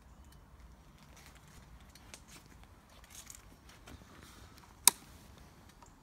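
Quiet background with faint rustling and small scattered clicks, then one sharp click just before five seconds in; no engine is running.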